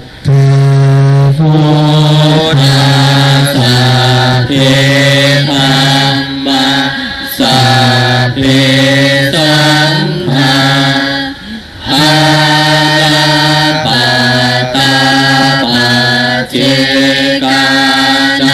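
Buddhist chanting in Pali, recited on one steady low pitch, syllable by syllable in short phrases with brief breath pauses, one slightly longer break about eleven seconds in.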